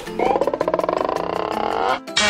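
A sustained buzzing tone with a fast, even flutter, cut off abruptly at the end. It is a comic sound effect added in editing over a reaction shot.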